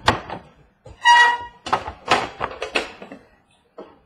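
Hands handling and opening a cardboard trading-card box on a wooden table: a sharp tap, a brief loud high tone about a second in, then a quick run of knocks and rustles as the box is worked.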